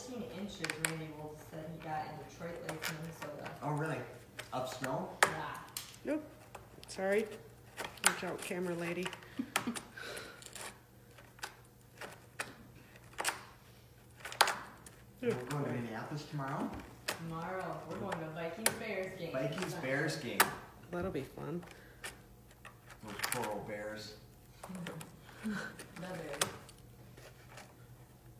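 Quiet talking throughout, with frequent sharp clicks from a metal pick working inside a deer shoulder mount's nostril, prying at a loose piece of hard plastic septum and old epoxy.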